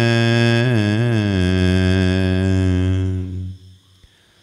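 A man's voice singing one long held note of a devotional chant, the pitch wavering briefly about a second in, then fading away near the end.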